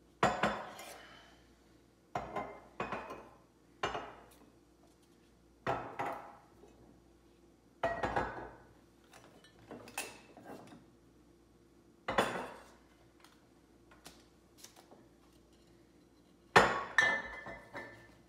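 Glass liquor bottles clinking and knocking as they are picked up and set down on a granite countertop: about a dozen separate clinks at irregular intervals, each ringing briefly, the loudest near the end.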